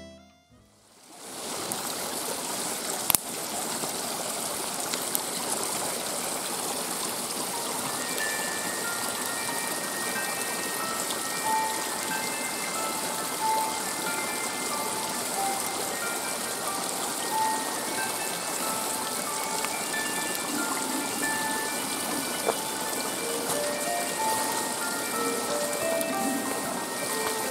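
Steady rain falling in a forest, a soft even hiss with one sharp click a few seconds in. Sparse, gentle background music notes come in over it about a third of the way through.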